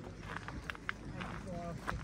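Distant people talking, over a steady low rumble of wind on the microphone and the wearer's footsteps. A few sharp clicks come before and about a second in, and one near the end.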